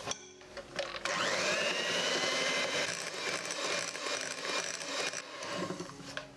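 Electric hand mixer running, its beaters working flour into a thick butter-and-egg cake batter. The motor starts about a second in with a rising whine that then holds steady, and it stops near the end.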